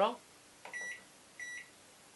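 Microwave oven control panel beeping twice as its timer is set: two short, identical electronic beeps about two-thirds of a second apart.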